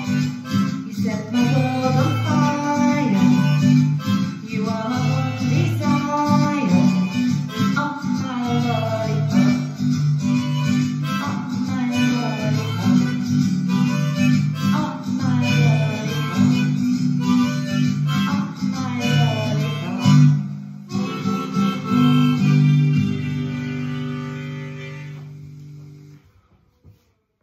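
Harmonica playing a melodic instrumental solo with bent, sliding notes over acoustic guitar chords. Near the end it closes on a held final chord that fades out.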